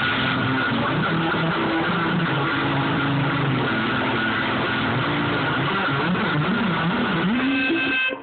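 Heavily distorted electric guitar playing low notes that slide and waver in pitch, thick with noisy fuzz.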